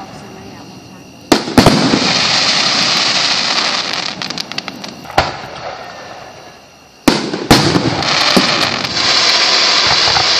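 Fireworks going off: two sharp bangs about a second in, followed by several seconds of loud hissing and crackling. The sound fades, then two more bangs come at about seven seconds and the hissing and crackling starts up again.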